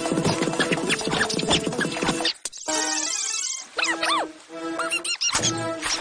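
Cartoon soundtrack played back at four times normal speed: music with high-pitched squeaks and quick gliding chirps from the sped-up voices and sound effects. It drops away briefly about two and a half seconds in and again a little past four seconds.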